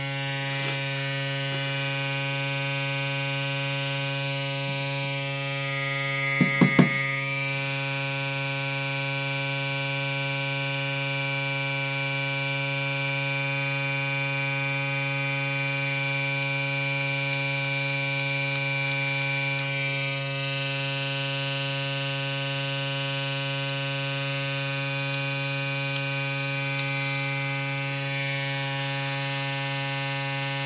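Small airbrush compressor running with a steady electric hum, with the hiss of air through the airbrush growing and fading as it sprays. Three quick knocks about six and a half seconds in.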